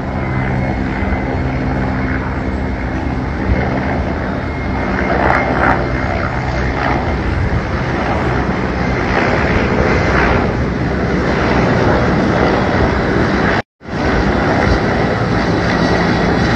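Helicopter in flight nearby: a loud, steady drone of engine and rotor, breaking off for an instant near the end where the footage cuts.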